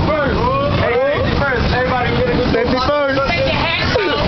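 A group of excited voices talking and calling out, one voice holding a long note for a couple of seconds in the middle, over a steady low rumble.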